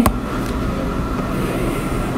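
Steady low background rumble and hiss with a faint steady whine, the same noise that runs under the speech on either side, plus a couple of small clicks.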